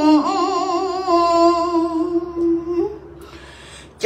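A woman's solo voice chanting Khmer smot, a Buddhist chant: a long melismatic held note that wavers with vibrato at first, then settles and trails off about three seconds in, leaving a short pause.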